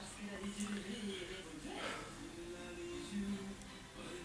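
Speech and music playing in the background, with a steady low hum that comes and goes.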